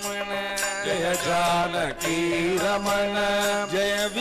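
Carnatic devotional bhajan: a male lead voice sings a namasankirtanam melody, with mridangam drum strokes and harmonium under it.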